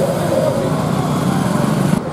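A small engine running steadily at an even level, with a low rumble.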